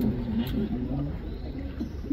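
Tour boat's motor running at low speed, a steady low rumble, with voices talking quietly over it and a single sharp click about half a second in.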